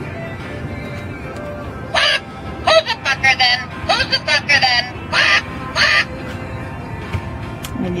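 Motion-activated talking parrot toy speaking in a high, squawky recorded parrot voice: a run of short bursts from about two to six seconds in.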